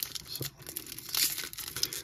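A Topps baseball card pack's wrapper being torn open at its crimped end and crinkling, with a louder burst of tearing and crinkling about a second in.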